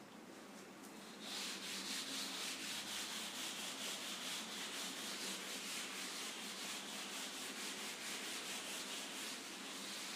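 A duster wiping chalk off a chalkboard, starting about a second in and going on in quick, repeated rubbing strokes.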